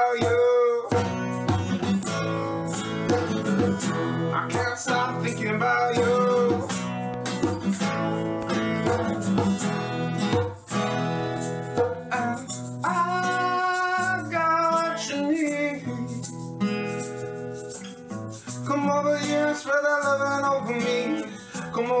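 Acoustic guitar strummed with a man singing over it, and a hand shaker rattling along in time.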